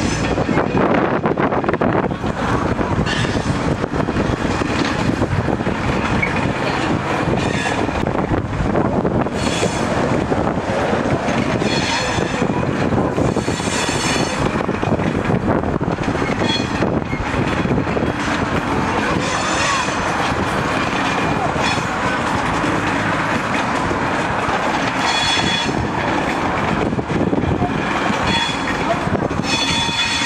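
Steady, loud rail noise from a freight yard: Class 66 diesel locomotives running among freight wagons, with brief high-pitched squeals recurring every few seconds.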